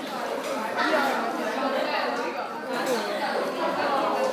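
Indistinct chatter of several people talking over one another, with no single clear voice.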